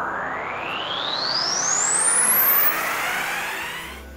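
A synthesized riser sound effect: a noisy whoosh that climbs steadily in pitch, building to its loudest about two and a half seconds in and then fading, over background music. It marks a transition between scenes in the edit.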